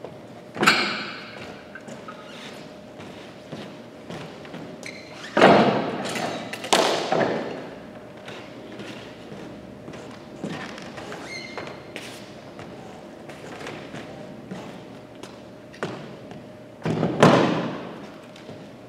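Dumbbells and other gym equipment being picked up and set down on a hardwood gym floor: loud thuds about half a second in, twice around six to seven seconds in, and again near the end, each echoing in the large hall. A faint steady hum runs between them.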